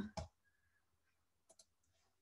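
Near silence with two faint, quick clicks about one and a half seconds in: a computer mouse clicking to start an embedded video.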